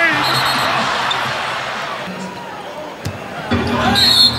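Arena sound during an NBA game: crowd noise that fades over the first two seconds, with a basketball bouncing on the hardwood court. A short high-pitched tone sounds near the start, and a louder one comes right at the end as a commentator's voice returns.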